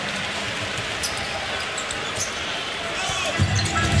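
Basketball dribbled on a hardwood court over the steady murmur of an arena crowd, with scattered short ticks of ball and shoe contact. A low music bed comes in near the end.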